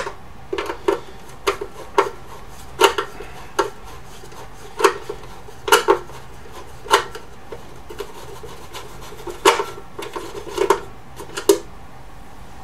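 Screwdriver turning out a case screw on a bench power supply: a run of irregular sharp metallic clicks, some in quick pairs, with a pause of about two seconds in the middle, stopping just before the end.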